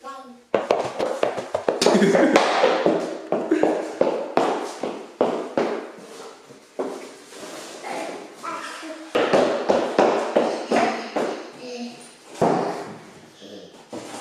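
A toddler's voice babbling and laughing, mixed with many light taps and a few thuds as he handles a shoebox on the floor.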